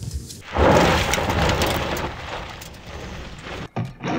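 A deep boom about half a second in that fades slowly into a rumbling hiss over the next three seconds, with a short thump just before the end.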